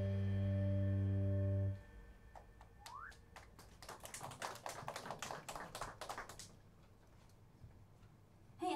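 The held final chord of a pop song's backing track ends abruptly about two seconds in. It is followed by a few seconds of scattered clapping from a small audience, with one short rising call among it.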